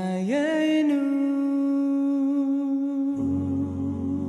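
A cappella vocal music: one voice slides up into a long held note, and a lower, fuller chord of voices comes in a little after three seconds.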